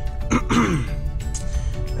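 A man clears his throat once, about half a second in, over quiet music from the truck's radio and the low steady rumble of the moving truck's cabin.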